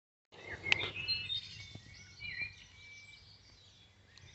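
Small songbirds chirping faintly in the background, short high calls and trills that thin out after about two and a half seconds. A single sharp click comes near the start.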